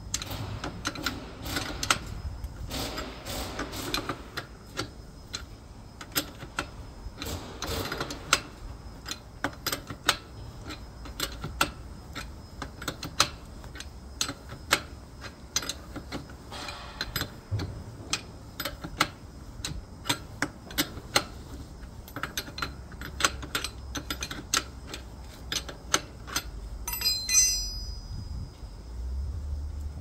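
A 22 mm spanner is working a stretcher's swivel caster stem loose, giving repeated sharp metallic clicks and ticks as the wrench turns and is reset on the nut. Near the end there is a brief ringing metal clink.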